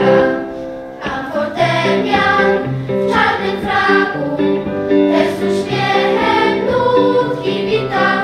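Children's choir singing a song, the voices moving through held notes over steady lower accompanying notes.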